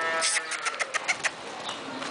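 Rider clucking to urge a horse on: a quick run of sharp tongue clicks, several a second, dying away about a second and a half in.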